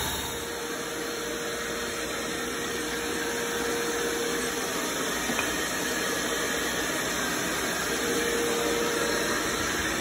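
Sandblast cabinet's air-fed blasting gun running: a steady hiss of compressed air and abrasive grit frosting the surface of a glass wine bottle, with a faint steady whine under it for the first half and again near the end.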